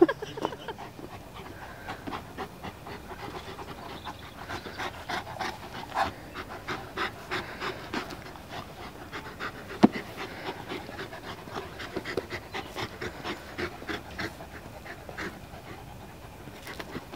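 Two large dogs panting while they play-wrestle, a quick run of breaths with scattered small clicks. One sharp click stands out partway through.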